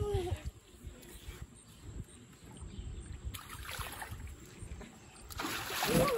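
Pool water splashing and sloshing softly, with a louder splash near the end as water is thrown up in spray.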